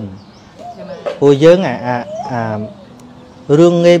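A man speaking in short phrases, with faint bird calls in the background.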